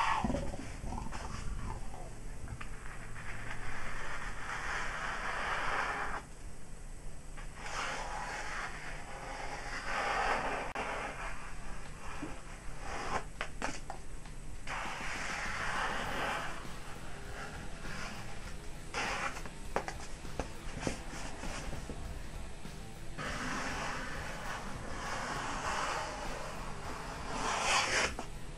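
A sheet of paper rustling and being sliced by a freshly sharpened EKA knife with a scandi grind, in a series of separate strokes, each a second or two long: a paper-cutting test of the new edge.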